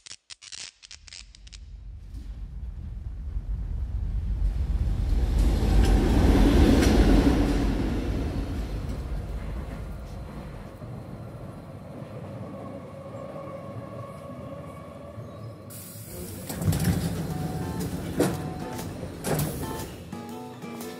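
A subway train's low rumble builds to a loud peak and slowly fades, with a steady whine later on, then a sudden hiss and a few sharp knocks near the end. It opens with a quick run of clicks as a grid of lamps switches on.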